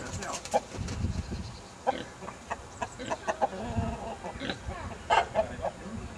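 Chickens clucking in short, repeated calls, the loudest and sharpest about five seconds in.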